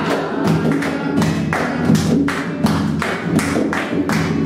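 Live acoustic music: an acoustic guitar strummed in a repeating bass-and-chord pattern, with a steady beat of about three strikes a second drummed by hand on the body of a second acoustic guitar lying flat.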